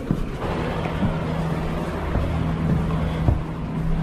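Steady low hum over a continuous rumble of room noise, with a few brief knocks and music playing faintly in the background.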